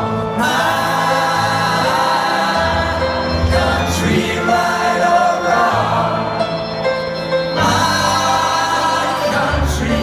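Rock band playing live, with singing over sustained chords and a bass line that changes note every second or two.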